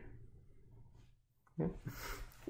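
Near silence (room tone) for about a second and a half, then a man's voice saying a single short "okay".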